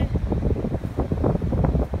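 Wind buffeting the phone's microphone in uneven gusts, a rough low rumble.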